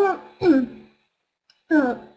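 A woman briefly clears her throat, followed by a short falling voiced sound near the end.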